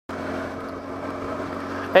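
Motorcycle engine running at a steady pitch while the bike cruises along the road, with wind noise; a man's voice begins right at the end.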